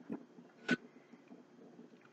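Drinking from an energy-drink can: a swallow right at the start, then a short sharp click about two-thirds of a second in, the loudest sound, with faint low sounds between.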